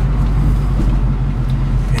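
A 1966 Ford Mustang's 289 V8 with dual exhaust, running steadily under way and heard from inside the cabin as a low, even drone mixed with road noise.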